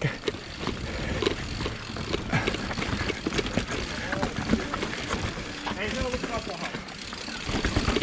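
Mountain bike riding down a rocky, rooty trail: a steady clatter of knocks and rattles from the tyres, chain and suspension hitting rocks and roots, over a low rumble.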